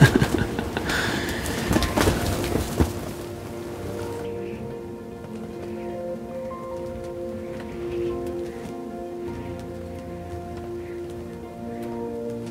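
A man's short laugh, then a rushing noise with a few clicks for about four seconds. After that, quiet background music of long held tones.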